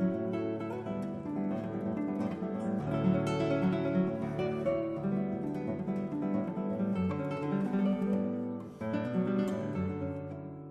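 Nylon-string classical guitar played fingerstyle: a fast, busy flow of plucked notes over sustained low bass notes. About nine seconds in, a strongly plucked chord rings on and begins to fade.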